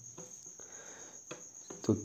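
A steady high-pitched trill runs through a pause in speech, with a couple of faint clicks. A man's voice starts a word near the end.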